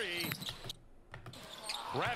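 A basketball bouncing on a hardwood court in the game broadcast's sound, quiet beneath a man's voice that trails off at the start and comes back near the end.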